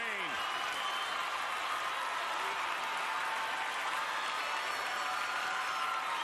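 Large arena crowd applauding and cheering at the end of a figure-skating performance: a steady, unbroken wash of clapping and voices.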